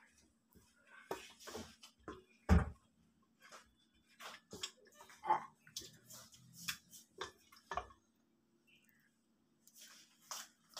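A serving spoon scraping and clinking against a plate as pieces of meat curry are moved about, in scattered short sounds with one louder knock about two and a half seconds in.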